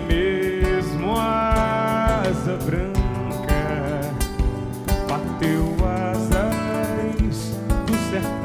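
Live band playing a song: a male singer's voice carrying a melody of held, gliding notes over electric bass, guitar and a drum kit keeping a steady beat.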